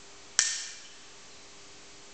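A single sharp pistol shot about half a second in, with a short metallic ring that dies away within about half a second.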